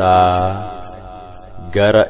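A man's voice chanting an Afaan Oromo Orthodox hymn. He holds one long note that fades over about a second and a half, then starts the next sung words near the end.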